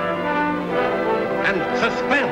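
Orchestral theme music led by brass, with held chords. Near the end a short wavering cry that sweeps up and down rises over the music.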